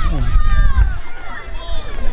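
Children shouting and calling out over one another while running about in a football game, several high voices overlapping, with a steady low rumble underneath.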